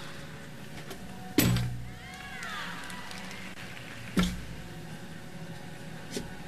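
Two heavy thuds about three seconds apart, the first about a second and a half in and the second about four seconds in: a gymnast's feet landing on a balance beam after acrobatic skills.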